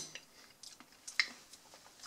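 Faint chewing of a soft, sticky black garlic clove: a few quiet wet mouth clicks, the sharpest a little after a second in.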